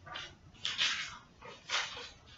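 A stiff paper card rustling in the hands as it is picked up and raised: three short, soft rustles about half a second to a second apart.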